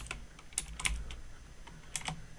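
Computer keyboard typing: a few separate keystrokes, quick clicks a quarter to a third of a second apart.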